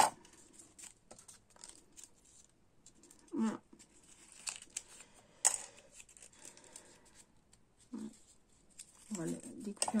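A small strip of paper handled and folded by fingers: quiet rustling and light clicks, with one sharper click about halfway through.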